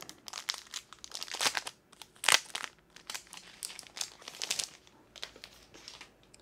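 Crinkling wrapping handled by hand as a phone is taken out of its packaging: irregular crackles, the loudest a little over two seconds in.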